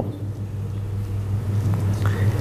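Steady low hum with a rumble underneath: the room's background noise between sentences of a lecture.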